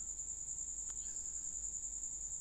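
A continuous high-pitched tone, steady and unbroken, over a faint low hum, with one faint click about a second in.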